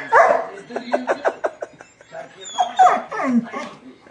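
Dog whimpering and whining in high, falling cries, with a run of short quick sounds about a second in. It is whining at a kitten it is searching for but cannot find.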